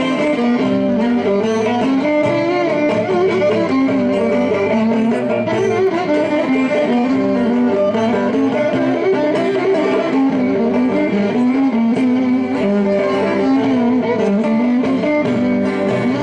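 Greek folk band playing live: a violin carries a moving melody over a laouto's strummed accompaniment, steady and continuous.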